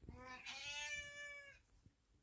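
A domestic cat giving one long, faint meow that lasts about a second and a half.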